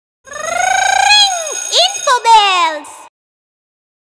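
A short cartoon logo sting: a warbling, voice-like tone that rises in pitch, then swoops down and up a few times and cuts off about three seconds in.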